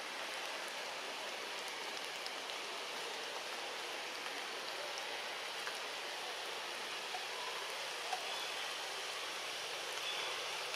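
Steady hiss of light rain on forest foliage, with a few faint scattered drips.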